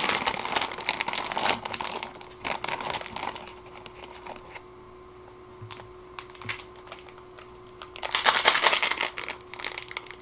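Plastic instant-ramen packaging crinkling as it is handled. There is a dense bout over the first few seconds, then scattered quieter crackles, then another loud burst of crinkling at about 8 seconds.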